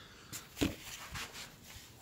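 Handling noise from a phone being picked up off a workbench: a few light knocks and scuffs, the loudest just over half a second in, with smaller ones around a second in.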